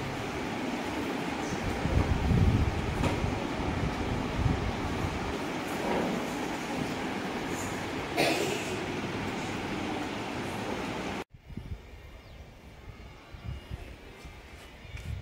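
Steady rushing room noise in a computer lab, with low rumbling bumps on a handheld microphone about two seconds in. Near the end it cuts off suddenly to a quieter outdoor ambience.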